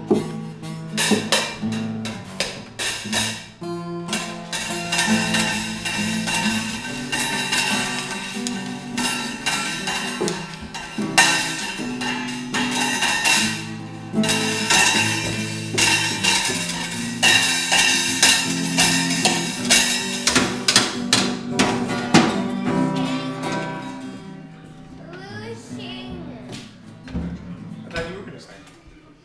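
Acoustic guitar strummed in chords while a child bangs irregularly on a small drum kit and cymbals with drumsticks. The playing gets quieter in the last few seconds.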